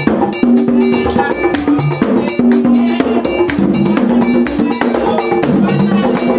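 Haitian Vodou ceremonial drumming: hand drums played with a metal bell struck in a fast, steady pattern.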